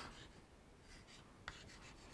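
Chalk writing on a chalkboard: faint scratching strokes and a light tap as letters are written.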